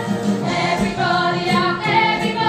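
A chorus of young voices singing a stage-musical ensemble number together, the melody moving from note to note.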